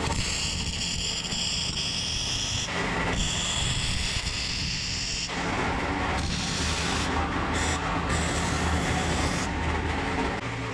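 MIG welding arc on a corner joint of square steel tubing, a steady crackling hiss in two runs with a short break about three seconds in, stopping a little after five seconds. A steadier background noise carries on after the arc stops.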